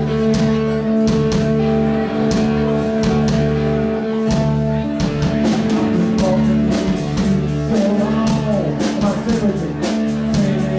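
A live rock band playing: long sustained guitar chords over a steady drum-kit beat, with a wavering melodic line coming in over the chords in the second half.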